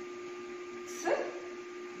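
A steady electrical hum, with one short spoken word about a second in.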